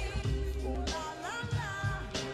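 Music: a hip hop beat with a deep bass and a sung vocal line held and sliding in pitch over it.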